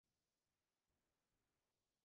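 Near silence: digital silence with only a faint noise floor.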